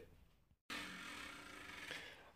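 Near silence: faint room tone, cut off by a moment of dead silence about half a second in, then a faint steady hiss.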